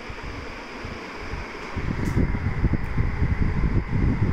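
Steady hiss with low, uneven rumbling of air buffeting the microphone, which grows louder a little under two seconds in.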